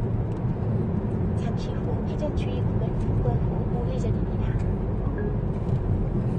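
Steady low rumble of a car's engine and tyres heard from inside the cabin of a moving car.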